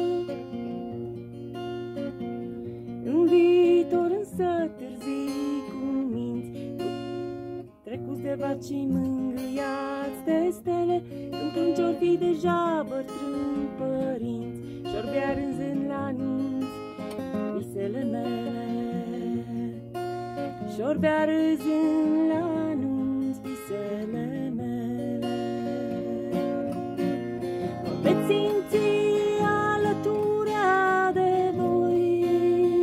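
A woman singing to her own strummed acoustic guitar, with a brief break in the sound about eight seconds in.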